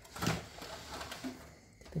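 Faint rubbing and light clicks of hands handling and turning a metal hi-fi amplifier case, with a short spoken word near the start.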